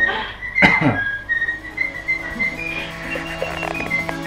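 A whistled tune of short, quick notes with a single sharp knock about half a second in. About halfway through, sustained low music notes come in underneath.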